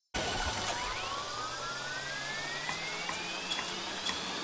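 Video slot sound effect from NetEnt's Stickers while the reels spin on a sticky respin: a steady whir with a thin tone that climbs slowly in pitch from about a second in until near the end, building anticipation.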